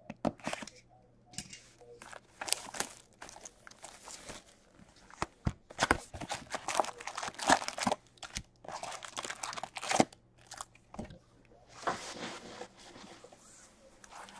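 A cardboard hobby box of hockey card packs being torn open, then foil card packs rustling and crinkling as they are pulled out and stacked, with scattered sharp clicks and scrapes.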